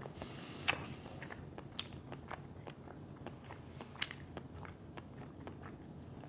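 A person chewing a mouthful of food, with irregular soft mouth clicks and smacks, a sharper click just under a second in.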